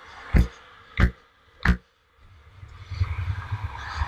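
Evenly spaced thumps, about three every two seconds, stopping a little under two seconds in; then the steady low rumble of skateboard wheels rolling on asphalt.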